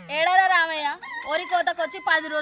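A rooster crowing: one call lasting under a second that rises, holds and drops off at the end. Brief voice-like sounds follow it.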